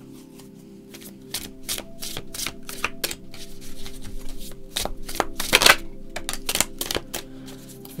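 A deck of tarot cards being shuffled by hand: a run of quick, irregular papery clicks and rustles that grow denser and louder about five seconds in. Faint steady background music plays underneath.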